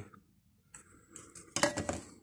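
Faint light metallic clinks and scraping from the ATV's muffler parts being handled after the rivets were drilled out, with a sharper clink near the end.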